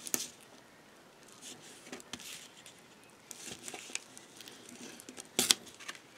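Tape being laid along a scored paper panel by hand: faint scattered rustling and scraping of paper, with a sharp click about five and a half seconds in.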